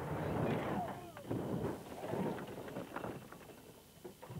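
Stunt car leaving the road and landing hard on dirt: a loud rush of gravel and dust, then several sharp thuds and rattles about a second in and after, dying away near the end.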